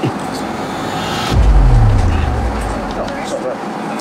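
Steady jet airliner cabin noise. About a second in, a deep boom falls in pitch and fades away over a second and a half.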